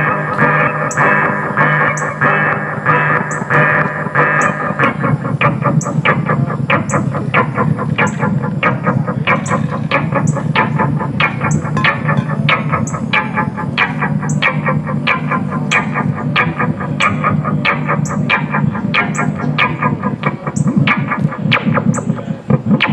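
Live electronic music played on synthesizers: a steady high ticking beat about twice a second over a distorted, echoing synth drone.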